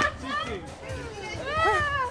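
Excited shouting and laughter from a small group of people, with a long rising-and-falling call in the second half.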